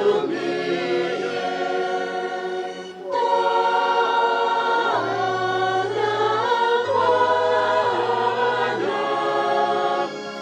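A choir sings a hymn over steady, held bass notes, with a brief break in the singing just before three seconds in.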